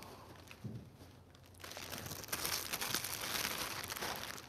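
Thin plastic carrier bag crinkling and rustling as a hand rummages inside it to draw a raffle number. The rustling starts about a second and a half in.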